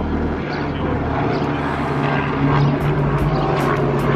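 Helicopter flying overhead, its rotor and engine making a steady low drone.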